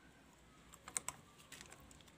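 Faint, light clicks and rattles of small plastic wiring connectors being handled behind a motorcycle headlamp, a handful of them about a second in.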